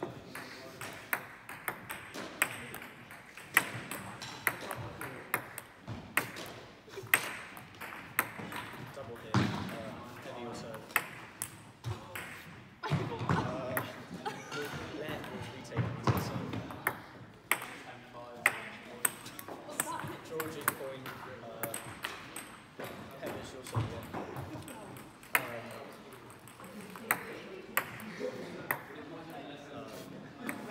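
Table tennis ball clicking off bats and the table in a series of rallies: sharp ticks about every half second, in runs separated by short pauses between points.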